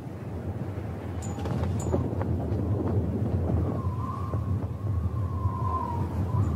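Wind buffeting the microphone, heard as an uneven low rumble. There are two short high chirps about a second in, and a thin wavering tone in the second half.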